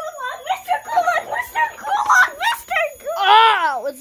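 A child's voice chattering in a play voice, the words not clear, with one long high-pitched squeal that rises and falls near the end.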